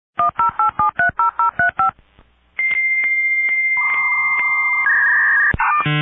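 Touch-tone telephone keypad dialing, about ten quick two-tone beeps. After a short pause comes a steady high electronic tone with evenly spaced clicks, then bands of hissing tones like a dial-up modem connecting. Short pitched electronic tones follow near the end.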